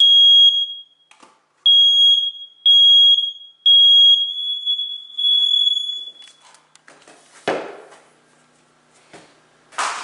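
Hardwired ceiling smoke alarm sounding on its test button: a run of loud, high-pitched beeps for about six seconds that then stops. A single thump follows about seven and a half seconds in.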